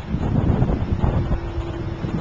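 Wind buffeting the microphone, a loud uneven low rumble.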